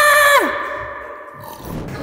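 A loud, steady pitched tone that slides steeply down in pitch and cuts out about half a second in: an edited-in 'power-down' sound effect. A quieter stretch follows.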